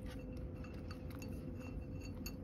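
A cat eating from a ceramic bowl, its mouth clinking irregularly against the bowl about four times a second, each clink ringing briefly.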